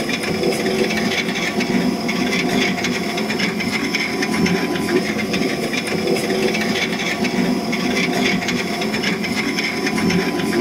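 Potter's wheel running steadily while wet clay is rubbed and shaped by hand on it, giving a continuous running noise with faint steady tones.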